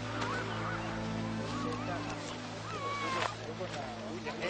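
Birds calling with wavering, gliding cries, one long falling call about three seconds in, over a held low music chord.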